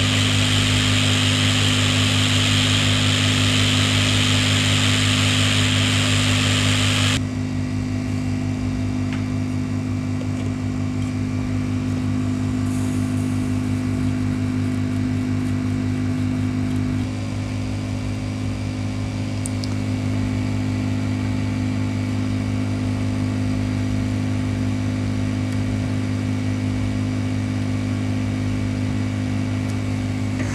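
Hot air rework station blowing on a laptop motherboard chip as it is lifted off with tweezers, a steady hiss that cuts off suddenly about seven seconds in. A steady low electrical hum carries on underneath throughout.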